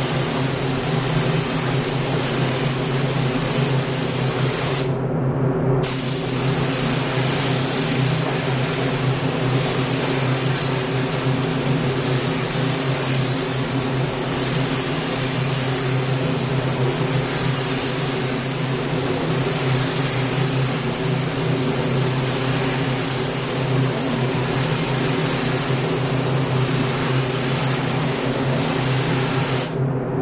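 Gravity-feed air spray gun hissing steadily as it sprays paint onto a car door, the trigger let off briefly about five seconds in and again at the end, over a steady low hum.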